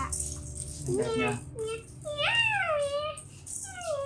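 Plastic rattle toys hanging from a baby crib mobile rattling as it is grabbed and handled, alongside a child's long rising-and-falling vocal sounds.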